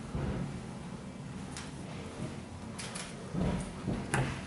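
Steady low background noise in a bare, empty room, with a few light clicks and knocks about a second and a half in and again near the end.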